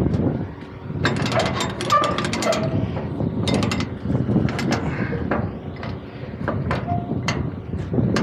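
Steel wire-rope cables and chain being pulled and handled along a trailer's steel side rail, giving irregular clusters of metallic clinks, rattles and scrapes.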